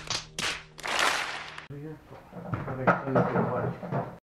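Excited shouting and cheering voices, loud noisy yells in the first second and a half, then more voices, with a sharp knock about three seconds in.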